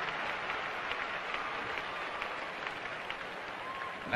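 Audience applauding, an even clatter of many hands.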